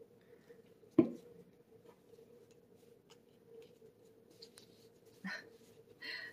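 Paper handling at a tabletop: one sharp knock about a second in, then soft scattered ticks and rustling as hands fold and press a glued paper envelope's flaps down, over a faint steady hum.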